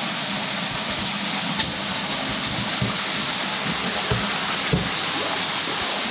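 Steady rushing of running water, with a few soft low thumps scattered through it.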